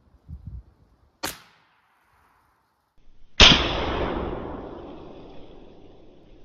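A sharp click about a second in, then a loud report from an AEA .50-calibre big-bore airgun firing a AAA battery in a 3D-printed sabot. The report dies away over about three seconds.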